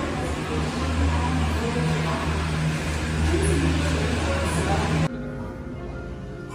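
Steady low hum and rumble of gondola lift station machinery as the cabins move through the station. It cuts off abruptly about five seconds in, giving way to quieter background music.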